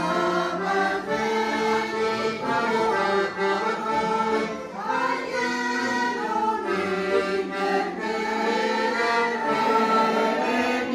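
Women's choir singing a song together, with long held notes.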